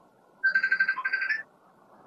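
A phone's electronic ringtone: a fast trilling beep lasting about a second, starting about half a second in.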